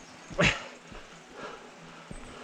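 One short, loud yelp-like call about half a second in, over the faint rattle and ticking of a mountain bike rolling down a rooty dirt trail.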